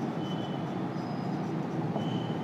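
Marker writing on a whiteboard, with a couple of brief high squeaks from the tip over a steady background noise.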